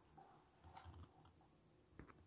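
Near silence: room tone, with a few faint soft sounds.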